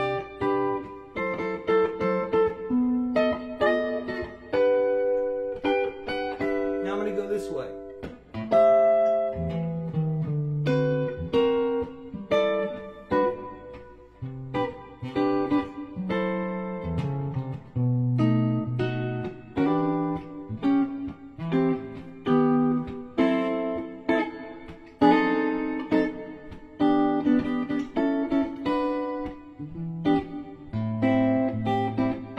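Gibson L-5 archtop guitar played solo in a jazz style, with chords, single-note lines and a moving bass line woven together continuously.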